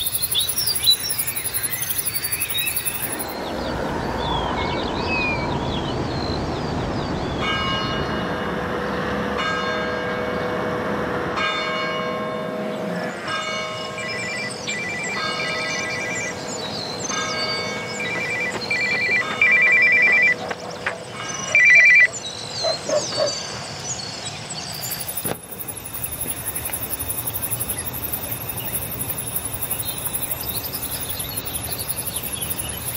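Birds singing, with a run of ringing bell-like chimes from several seconds in until just past the middle, struck about once a second, then quicker ringing notes near the end of the run.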